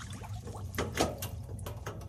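Water splashing in an ice-fishing hole as a released walleye goes back down, with a few quick splashes about a second in.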